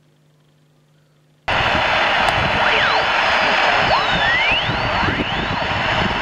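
After about a second and a half of near silence with a faint hum, a National Panasonic transistor radio converted to receive the 160-metre band cuts in suddenly with loud, steady static hiss. Thin whistles slide up and down in pitch over the hiss.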